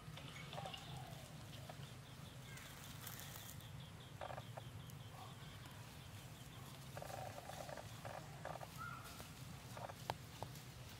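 Faint outdoor ambience over a steady low hum, with a few short rustles of dry leaves, around four seconds in and again between seven and nine seconds, as a long-tailed macaque walks over leaf litter.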